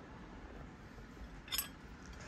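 Faint room tone, with one brief light clink about one and a half seconds in as a metal teaspoon is lifted off a porcelain saucer.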